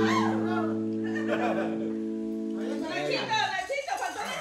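Live band holding one sustained chord, with men shouting and laughing over it; the chord stops about three seconds in, leaving talk and laughter.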